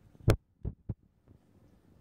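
Handling knocks from a paper gift bag as a plush teddy bear is pushed into it: one sharp knock, then two duller thumps in quick succession.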